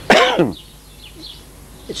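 A man coughs once, a single short cough with a falling pitch. Faint chirps sound in the background.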